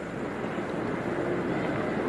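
Steady rushing background noise outdoors, growing slightly louder, with a faint steady hum coming in a little past the middle.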